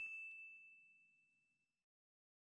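The faint, fading ring of a bell-like ding sound effect: one clear high tone dying away over nearly two seconds.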